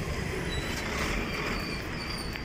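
Steady urban traffic noise, an even rumble of vehicles on a nearby road, with a faint thin high whine near the end.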